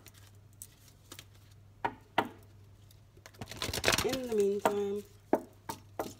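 A few sharp, separate clicks, typical of a lighter being struck and failing to catch, with a short burst of rustling handling noise past the middle.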